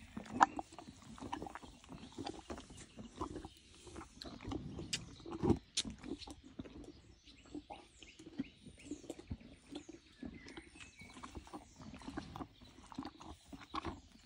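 A horse's breathing and mouth noises close to the microphone: irregular soft clicks and rustles, with one louder low thump about five and a half seconds in.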